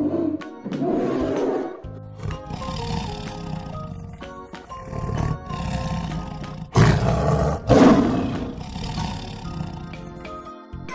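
Tiger roaring twice, loud, about a second apart past the middle, after lower growls, over background music.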